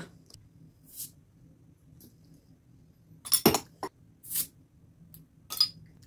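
Glass bottles of carbonated non-alcoholic beer being opened: a sharp pop and hiss about halfway through, a click, then another short hiss a second later, with glass clinking.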